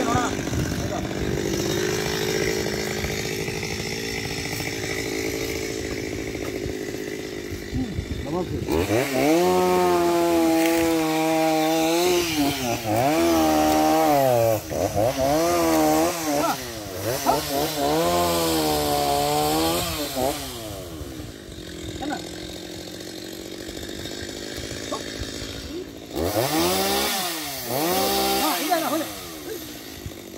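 Two-stroke chainsaw running at idle, then revved again and again from about nine seconds in, its pitch swelling up and falling back every second or two. It settles back to idle, with one more rev near the end.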